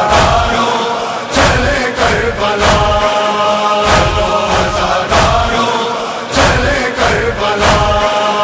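Male chorus holding a sustained, wordless chant, with evenly spaced chest-beating (matam) thuds about every two-thirds of a second keeping time, the backing of a Muharram noha between sung lines.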